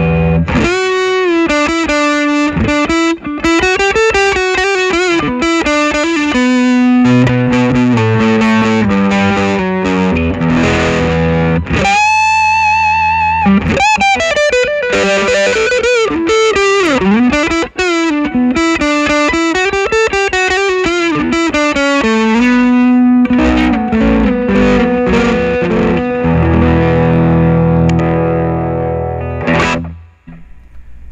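Electric guitar, a gold-top Gibson Les Paul Tribute on its neck pickup, played through a Fulltone PlimSoul overdrive pedal with the sustain knob at about nine o'clock: an overdriven lead line of bent notes, with a held note wavering in vibrato about twelve seconds in and fuller held chords near the end.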